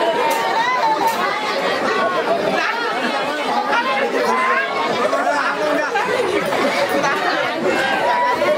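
Many voices talking at once: steady crowd chatter with no music playing.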